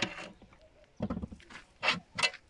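A steel rod knocking and scraping against a steel box mould in three short bursts: one at the start, one about a second in, and one just before the end.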